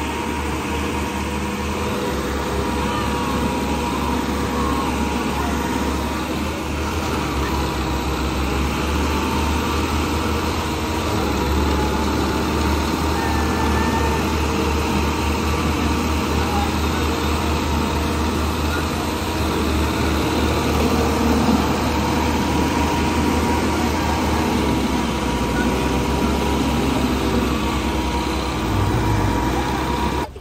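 Two diesel farm tractors, one a Massey Ferguson, running hard at full throttle under heavy load as they pull against each other in a tug-of-war, with rear tyres spinning and digging into the dirt. The engine noise is steady and loud throughout.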